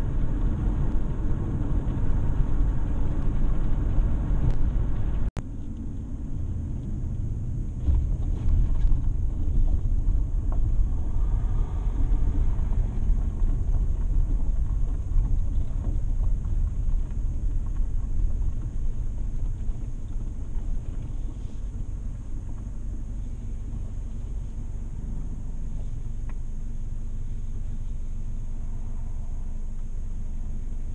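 Car cabin noise while driving: a steady low rumble of engine and road. It breaks off for an instant about five seconds in, then runs on a little quieter toward the end.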